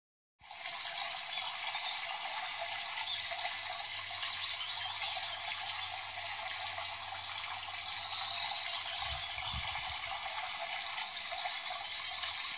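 Steady flowing water with occasional high bird chirps and a quick trill about eight seconds in, a nature-sound backing that fades in at the start.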